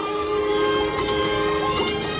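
Willy Wonka slot machine playing its bonus-round music of steady held notes while the reels spin during free spins, with a few faint clicks as the reels land.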